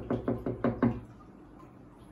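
Knuckles rapping on the glass of an aquarium in a quick run of about six knocks, several a second, which stop about a second in.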